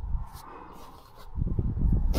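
Soft rustling and low bumps of fabric being handled, as hands press on a padded, quilted fabric seat cover; the rustling builds up about a second and a half in.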